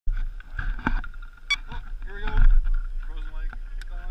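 Indistinct voices, with a low rumble like wind on the microphone and a faint steady high whine underneath; two sharp clicks in the first two seconds.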